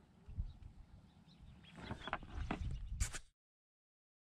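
Low rumbling and a few soft knocks from handling on a kayak, with one sharp click about three seconds in, after which the sound cuts off abruptly.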